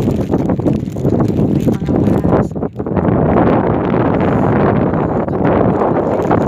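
Wind buffeting the microphone: a loud, gusty noise that grows heavier and steadier from about halfway through.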